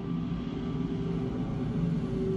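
Steady low rumble with a droning hum, unchanged throughout.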